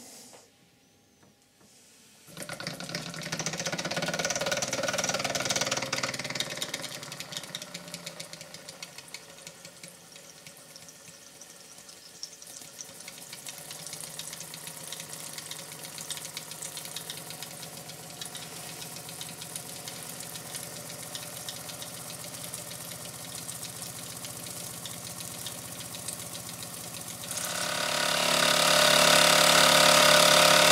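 Mamod SE2 toy live-steam engine running: steam hissing with a fast, even ticking from its single oscillating cylinder. About two and a half seconds before the end it gets much louder as the engine speeds up.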